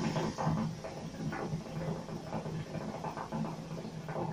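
Water bubbling and gurgling in a hookah's glass base through one long, unbroken draw on the hose. The speaker calls the draw a little restricted, which he puts down to the grapefruit bowl.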